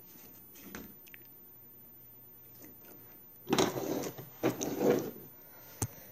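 Handling noise from objects being moved about on a tabletop: a few seconds of quiet, then a second and a half of loud rustling and scraping, and a single sharp click near the end.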